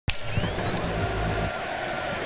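Logo-intro sound effect: a steady rushing whoosh, with a thin tone gliding upward in the first second.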